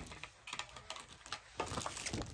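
Hands handling small packaging and accessories: a run of quick, irregular light clicks and taps, starting about half a second in.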